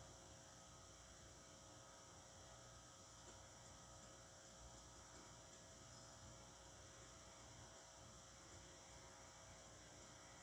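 Near silence: a faint steady hum with low hiss.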